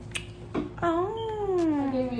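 A person's long drawn-out vocal sound, not words, that rises and then slowly slides down in pitch for over a second, after a brief sharp sound near the start.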